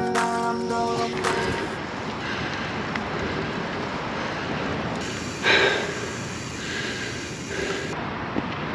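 Background music ending about a second in, followed by a steady rush of wind and tyre noise from a mountain bike rolling along a dirt trail, with a short louder burst about five and a half seconds in.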